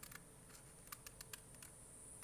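Small scissors snipping into folded origami paper: a few faint, quick clicks, most of them bunched around one second in.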